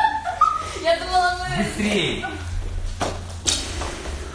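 Short high-pitched vocal sounds echoing in a large hall, then two sharp knocks about half a second apart near the end as dancers drop onto the studio floor.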